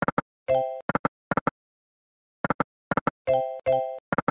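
EGT 100 Burning Hot online slot game sound effects: pairs of short plopping clicks as the reels stop, and three short chiming tones, one about half a second in and two in quick succession near the end.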